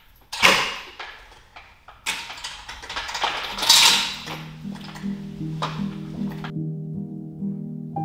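Knocks and clattering of things being handled, several sharp and the loudest a little under four seconds in. Gentle background music with a repeating pattern of soft notes comes in about four seconds in and carries on alone once the clatter stops.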